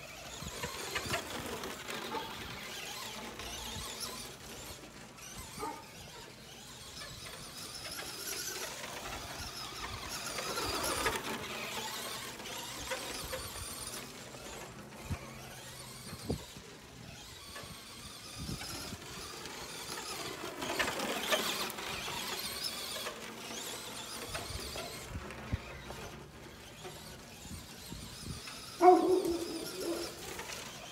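Traxxas Slash RC truck's electric motor whining as it laps the track, its pitch rising and falling as it speeds up, slows for turns and passes the microphone, with wind noise on the microphone. A dog barks loudly once near the end.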